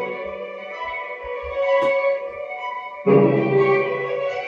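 Orchestral-style credits music rendered in Logic from a MIDI score, playing as held chords. A louder, fuller chord with deeper notes comes in about three seconds in.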